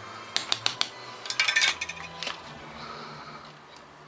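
Small metal parts clicking and clinking as a helping-hands soldering stand and its crocodile clip are handled: a few sharp clicks about half a second in, a quick cluster at about a second and a half, and one more just after two seconds.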